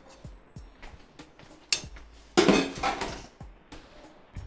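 Kitchen utensils clinking and knocking against a cutting board and glass bowl: a few scattered light taps, then a louder clatter a little past the middle.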